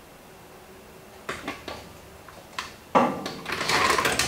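Hand-operated sheet metal brake being set up on a galvanised sheet: a few sharp metal clicks, then from about three seconds in, louder clanking and rattling of the clamp and sheet metal.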